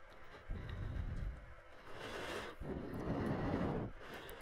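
Faint wind noise rumbling on a camera microphone, coming and going in uneven gusts with a light hiss, as the camera moves down a snowy slope.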